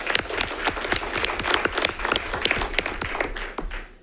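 Audience applauding: many people clapping together, thinning out and dying away near the end.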